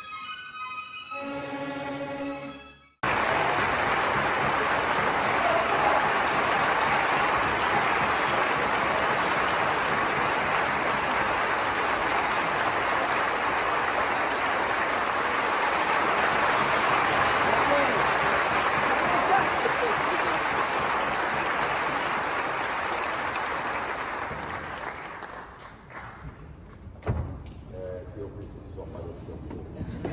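A few seconds of violin intro music, cut off by loud, steady audience applause that runs for about twenty seconds and fades away near the end.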